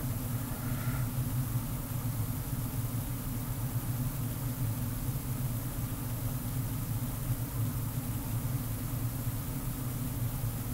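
A steady low machine hum that keeps an even level throughout, with no sudden events.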